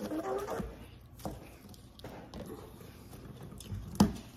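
Peanut butter jar spinning on a granite countertop, with a few light knocks on the stone and a sharp knock at the end as a hand stops it.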